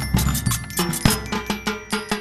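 Marching band drum line of bass drums and snare drums beating a fast rhythm, about four to five strikes a second, with ringing tones held over the beats.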